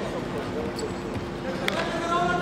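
Arena ambience during a freestyle wrestling bout: dull thuds of the wrestlers' bodies and feet on the mat under faint background voices and a steady hum, with one sharp slap about three-quarters of the way through.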